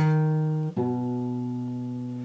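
Acoustic guitar with a capo on the second fret, fingerpicked without a pick: two single notes on the A string, a fretted note at the start and then the lower open string about three-quarters of a second in, left to ring and slowly fade.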